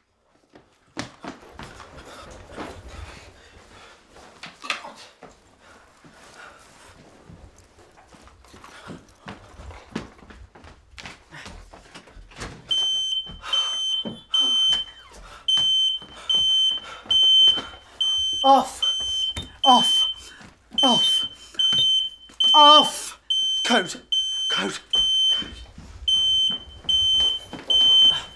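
Home security alarm panel beeping, a steady run of high beeps about two a second that starts about halfway through, after a stretch of soft handling and footstep sounds. A man's short, strained vocal sounds come in over the beeping.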